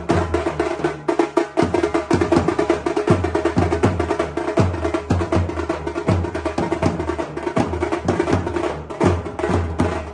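Several dhol barrel drums beaten with sticks in a fast, loud, driving rhythm: a dense patter of sharp stick strokes over deep beats about twice a second.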